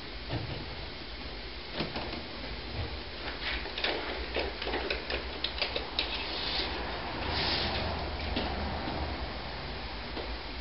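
Scattered light clicks and taps of a steel tape measure being handled and pulled out along a wooden board, thickest in the middle seconds, with a brief hiss about seven seconds in, over a faint low steady hum.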